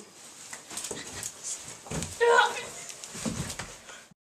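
Scattered knocks and bumps from movement on a floor, with a short high cry a little past two seconds in.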